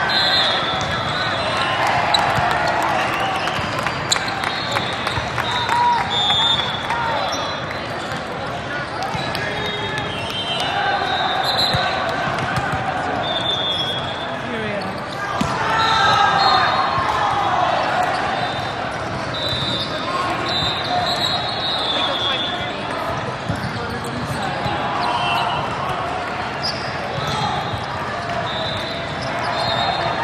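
Busy indoor volleyball hall: many voices of players and spectators overlapping, with volleyballs being hit and bouncing on the courts and short high-pitched squeaks cutting through, all echoing in the large hall.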